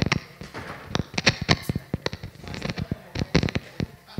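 A live handheld microphone being handled and set into its stand, giving an irregular run of sharp knocks and pops.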